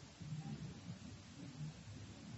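Faint, low, uneven classroom room noise with muffled, indistinct sounds and no clear speech.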